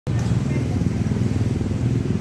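A steady low engine rumble, like a motor vehicle running close by.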